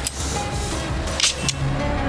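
Film background score of held, sustained notes over a low street-traffic rumble, with a brief sharp noise a little past the middle.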